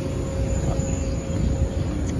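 Steady machine hum over a low, uneven rumble on a rooftop full of running equipment.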